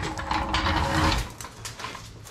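Snap-on floor jack being rolled across the shop floor, its wheels rumbling and rattling; the rolling dies down a little over a second in, leaving a few light clicks.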